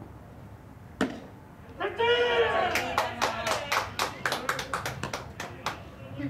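A baseball pitch popping into the catcher's mitt, followed by a drawn-out shout from a player and a run of hand claps, about four a second.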